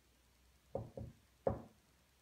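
Marker tapping against a whiteboard while writing: three short sharp knocks, two close together about three-quarters of a second in and a louder one about half a second later.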